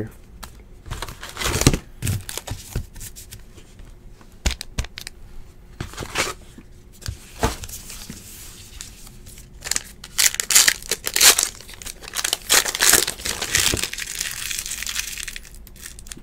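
Crinkling and tearing of trading-card pack wrappers being handled, in irregular rustling bursts that are busiest and loudest in the second half.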